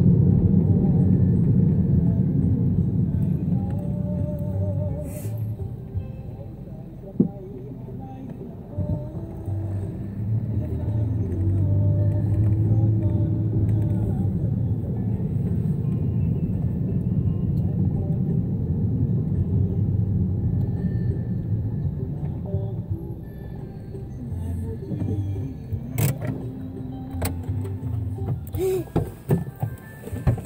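Engine and road noise heard inside a moving car, with music playing along with it. Two sharp clicks stand out, one about a quarter of the way in and one near the end.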